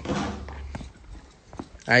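A horse's hooves clopping on cobblestones, a couple of separate steps, over a steady low rumble.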